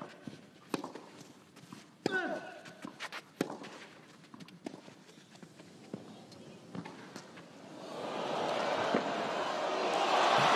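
Tennis rally on a clay court: sharp racket-on-ball hits a little more than once a second. Crowd noise swells over the last couple of seconds as the rally goes on.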